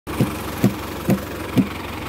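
Farm tractor engine idling steadily, with a regular thump about twice a second.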